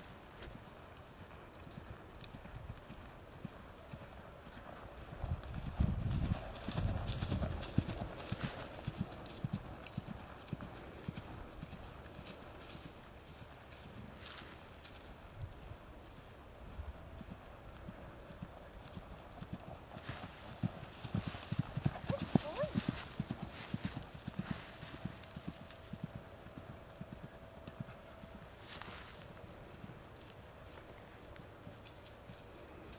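Hoofbeats of a ridden horse cantering on grass, a run of soft repeated thuds that grows louder twice.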